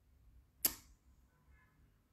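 A single sharp click about two-thirds of a second in, dying away quickly, against near silence.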